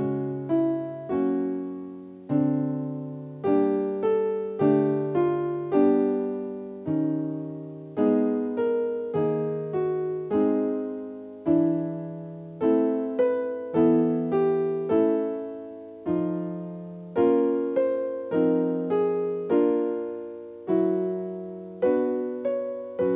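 Piano accompaniment for a vocal warm-up exercise, with chords and a short figure circling the root note struck again and again, each note dying away. The pattern is played in a higher key each time.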